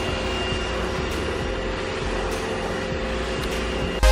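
A machine running steadily in the background: an even hum with a few held tones and no change in pitch or level.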